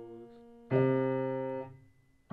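Piano chords played slowly: a held chord fades away, then a new chord is struck about a third of the way in, held for about a second and released, leaving a brief gap near the end.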